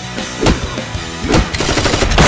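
Gunfire over action-trailer music: single sharp shots about half a second in and just past the middle, then a rapid burst of shots near the end.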